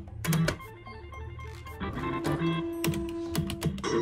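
Looping organ-like electronic background music, with several sharp clicks from a Funky Juggler pachislot machine's lever and reel-stop buttons as a game is played.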